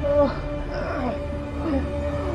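A held, tense music drone runs throughout, while voices cry out in short, strained, growl-like bursts, the loudest just after the start.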